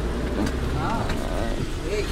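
Steady low rumble of a moving minibus, its engine and road noise heard from inside the passenger cabin.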